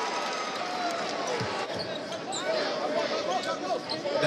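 Arena sound of a basketball game: a ball bouncing on the hardwood court, with scattered short strikes over a steady background of crowd noise.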